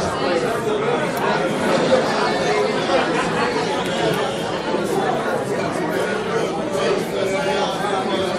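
Several people talking at once in overlapping chatter, with no single voice standing out.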